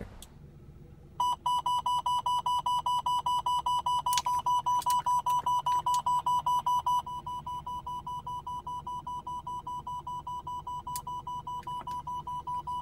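Radenso RC M radar detector sounding its laser alert: a fast, even run of high beeps, about six a second, set off by the AntiLaser Priority detecting laser. It starts about a second in and drops to a softer level about seven seconds in, with a few sharp clicks over it.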